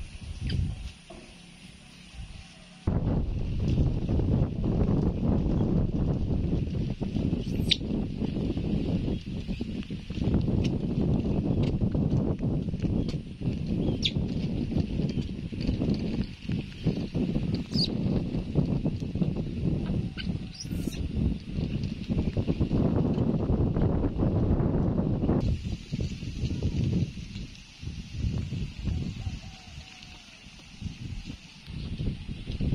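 A loud, low, fluttering rumble of wind buffeting the microphone. It starts abruptly about three seconds in and stops about five seconds before the end. A few short, high chirps sound through it.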